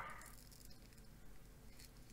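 Near silence with a faint rustling from a braided USB cable being handled.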